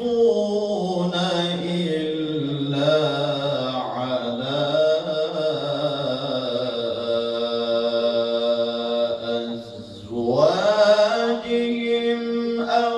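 A male qari reciting the Qur'an in melodic tilawah style, holding long ornamented notes that glide slowly in pitch. Near ten seconds in he breaks off for a breath, then comes back on a steep rising phrase.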